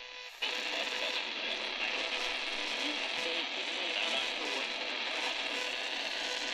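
Tiemahun FS-086 portable radio on the AM band, tuned to a weak distant station: static hiss with a faint station barely coming through and a thin steady whistle. The hiss jumps louder about half a second in as the tuning knob is turned.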